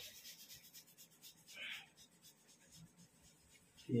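Faint rubbing of hands on skin as someone's palms and wrist are chafed, a soft irregular scratching and rustle.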